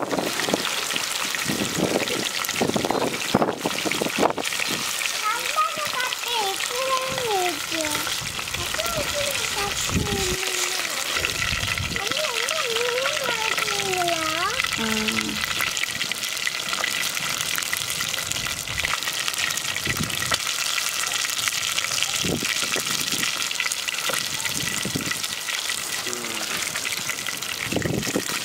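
Mackerel pieces deep-frying in hot groundnut oil in a clay pot: a steady sizzle.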